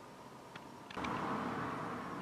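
Quiet room tone with a couple of faint clicks, then about a second in a steady rushing noise starts abruptly and carries on.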